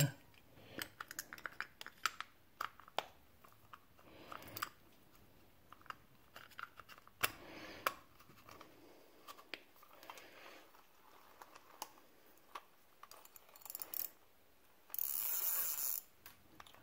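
Faint clicks, taps and light scraping of a Zebco 733 Hawg spincast reel's metal cover and parts being handled and fitted together, with a louder noise about a second long near the end.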